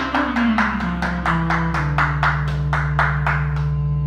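Roland electronic keyboard playing a piece with a steady beat of about four to five strokes a second. Below the beat, the bass line moves in the first second or so and then holds one long note under sustained chords.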